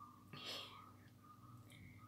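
Near silence: room tone, with one short breath about half a second in.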